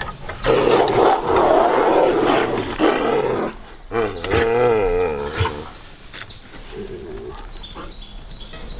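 Two sun bears squabbling: a loud, harsh roaring snarl lasting about three seconds, then a wavering, moaning call about four seconds in.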